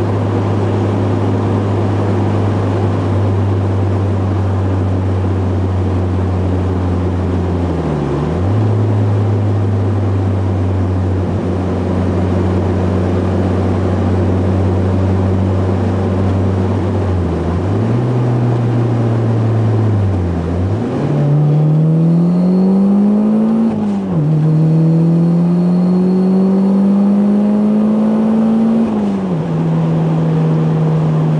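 Turbocharged car engine heard from inside the cabin, cruising steadily with a few brief dips in pitch, then pulling hard under boost. The note rises through one gear, drops sharply at a gear change about three seconds later, rises through the next gear, and falls back as the throttle is lifted near the end.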